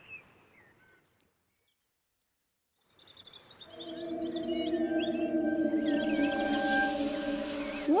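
Faint birdsong that dies away in the first second, a short silence, then a synthesized magic shimmer fading in about three seconds in: a held chord of steady tones with twinkling chirps on top. It is the sound effect for the boy's mind-link with the cat.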